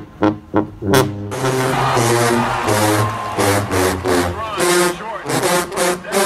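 Sousaphones playing short, punchy low notes. About a second in, a clip change brings a louder, fuller marching-band brass section with voices mixed in.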